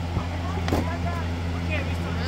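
A steady low mechanical hum, like a motor running, with a single light clink of a ladle against a steel stockpot about three-quarters of a second in and faint voices in the background.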